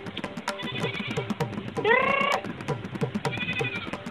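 A goat bleating twice, a loud call about two seconds in and a fainter one near the end, over rhythmic background music.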